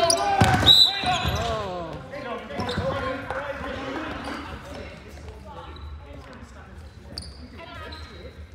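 Basketball game in an echoing sports hall: loud shouting and ball bouncing on the wooden court over the first second or so, with a short high squeak about a second in. The voices and court sounds then grow quieter.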